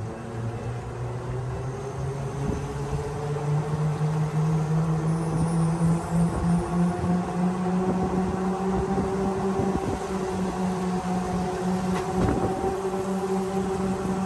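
Golf cart driving on a wet road. Its motor whine rises in pitch over the first few seconds as it speeds up, then holds steady, over a constant hiss of tyres and wind.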